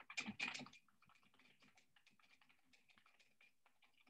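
Faint typing on a computer keyboard: a louder flurry of key clicks in the first second, then light, rapid, irregular keystrokes.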